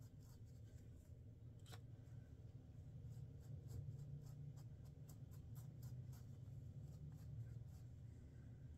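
Faint, quick scratchy strokes of a dye applicator brush being worked through coarse beard hair, irregular and several a second, over a low steady hum.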